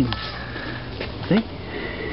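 Mostly speech: a man says two short words over a steady low rumble of handling noise.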